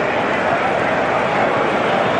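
Steady din of a large football stadium crowd: a dense, even wash of thousands of voices with no single sound standing out.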